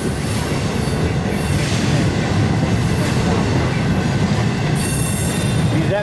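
Freight cars of a mixed intermodal and manifest train rolling past on a curve: a steady rumble of steel wheels on rail with thin, high flange squeal, the hiss and squeal brightening about five seconds in.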